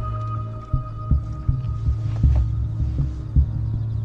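Suspenseful drama underscore: a low throbbing pulse like a heartbeat, about two beats a second, over a steady low drone and a faint held high tone.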